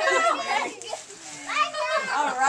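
Young children's voices calling out and squealing in play. It is loud at first, drops quieter around the middle, and picks up again near the end.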